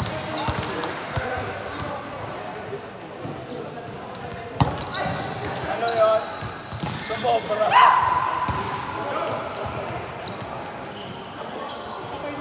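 Volleyball rally in a large sports hall: the ball is struck sharply twice, about four and a half and six seconds in, amid players' calls and chatter, with the loudest, a shout, about eight seconds in.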